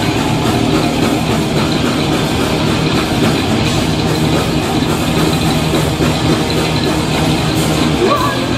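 Thrash metal band playing live: distorted electric guitars and a drum kit, loud and dense without a break.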